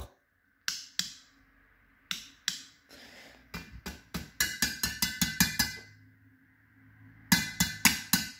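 Sharp clicks of an inline rocker switch and a fluorescent glow starter as a batten holding a 25-watt tube is switched on and off: a few single clicks, then a quick run of about four a second, then another cluster near the end, with the magnetic ballast humming between them. The tube will not stay lit because its electrode is burnt out, and the owner thinks he may have just broken it.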